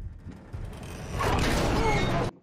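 Film soundtrack sound effects: a rushing noise that swells about a second in, with creaking glides near the end, then cuts off suddenly.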